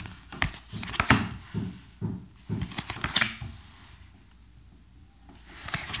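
Tarot cards being drawn and set down on a wooden table: a series of light taps and short slides, about half a dozen in the first three seconds, then quiet.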